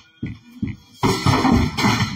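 Acoustic guitar strummed: a few short strokes, then a loud, rough burst of strumming about a second in.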